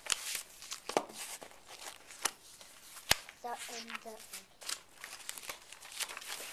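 A paper book being handled, its pages rustling and crinkling, with a run of sharp clicks and taps; the sharpest click comes about three seconds in.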